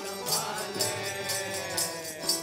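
Gurbani keertan: a harmonium holding steady notes under chanting voices, with jori hand drums and jingling percussion keeping a steady beat of about four strikes a second.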